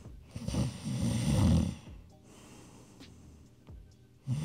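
A man's mock snore: one loud snore about a second and a half long, starting just after the beginning, then quiet.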